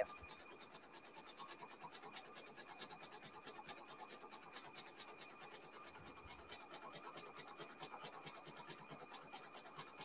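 Brother Persona PRS100 embroidery machine stitching out a monogram at about a thousand stitches per minute: a faint, fast, even ticking of needle strokes with a thin steady tone underneath.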